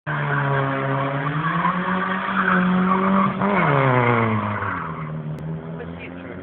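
A rally car's engine held at high revs while its tyres squeal on the tarmac. About three and a half seconds in, the revs dip and rise briefly, then fall away, and the engine runs lower and quieter near the end.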